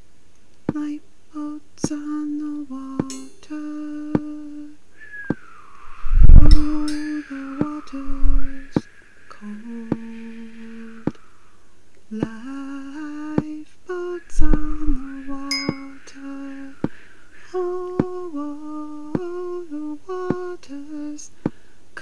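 A voice humming a slow wordless melody in held, stepping notes over scattered sharp clicks, with a higher wavering tone joining in the middle. A few heavy low thumps, the loudest sounds, land about six, eight and fourteen seconds in.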